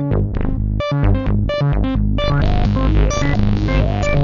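BugBrand BugModular modular synthesizer playing a sequencer-driven patch: a run of short pitched notes over a deep bass. The sound grows denser and brighter a little past halfway.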